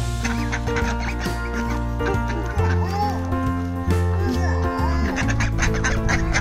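Domestic ducks quacking as they crowd around and take food from a hand, over background music with a steady beat.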